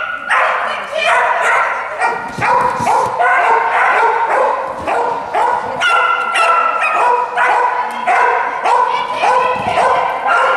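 Dog barking over and over in short, quick barks, about two a second, without a pause.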